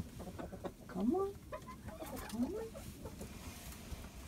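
Hens clucking in a chicken coop: two rising calls, one about a second in and another about a second and a half later, with soft clucks and small clicks between them.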